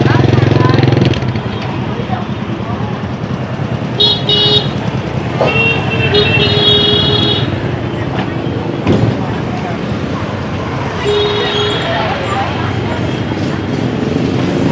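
Vehicle horns beep in traffic of motorbikes running past: a short toot about four seconds in, a longer beep from about five and a half to seven and a half seconds, and another short one near eleven seconds. An engine sounds loud for the first second, and voices chatter underneath throughout.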